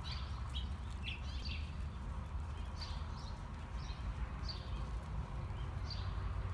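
Hoofbeats of a horse moving off across soft arena dirt over a steady low rumble, with short high chirps of small birds every second or so.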